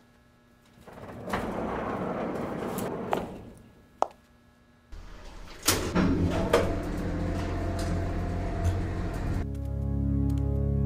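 Sound effects of an old freight elevator: a rushing slide of its door, sharp clicks, then a button click and the steady low hum of its motor running, with a few clanks. Ambient synth music fades in near the end.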